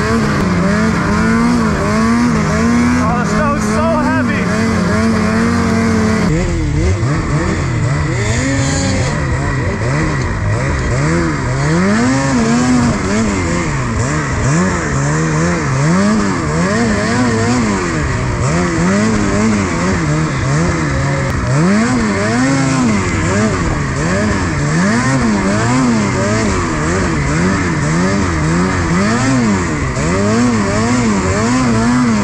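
Ski-Doo Freeride 850 Turbo two-stroke snowmobile engine running steadily at speed, then, after an abrupt change about six seconds in, revving up and down every second or two as the throttle is worked through deep, heavy snow among trees.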